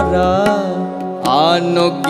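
Indian devotional ensemble music: a gliding, wavering melody line over a steady held drone from the keyboard, with one low sliding tabla (bayan) stroke near the start.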